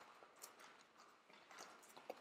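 Near silence: room tone with a few faint taps of hands being set down on exercise mats.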